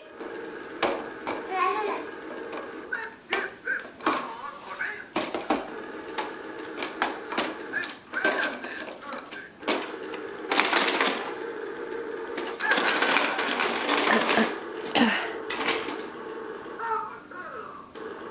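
Plastic toy push lawn mower rattling and clicking as it is rolled along, with the clicking thickest in two spells past the middle.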